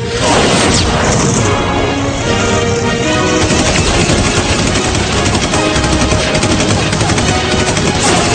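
Action-cartoon soundtrack: music under a continuous barrage of rapid gunfire and energy-weapon blasts.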